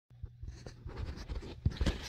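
Handling noise from a phone held in the hand: a string of small irregular scratches, rubs and taps against its microphone, over a faint steady low hum.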